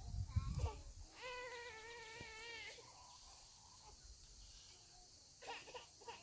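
A faint, high, wavering voice that sounds like a young child's cry, lasting about a second and a half from about a second in, over low outdoor background hiss.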